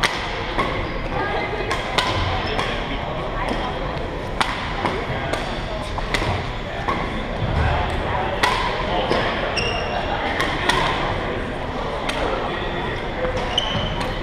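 Badminton play in a large echoing gym: repeated sharp cracks of rackets striking the shuttlecock, several to a couple of seconds apart, with a few short shoe squeaks on the court floor. Spectators chat underneath.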